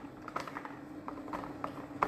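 Faint, irregular light clicks and taps from green beans being handled on a plastic cutting mat, over a steady low hum.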